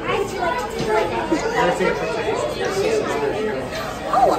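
Chatter of many voices talking at once in a busy restaurant dining room, overlapping conversations with no single clear speaker.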